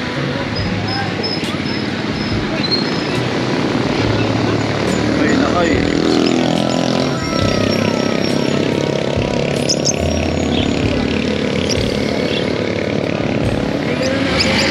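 Street market din: a motor vehicle's engine passing close by, swelling and shifting in pitch around the middle, over steady background chatter.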